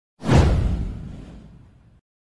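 Whoosh sound effect for an animated title card: a sudden swoosh with a deep rumble underneath starts a moment in, then fades away over about a second and a half.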